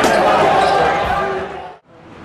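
Live game sound of a basketball game in a packed gym: crowd noise and voices with a ball bouncing on the court. It fades out to near silence just before the end.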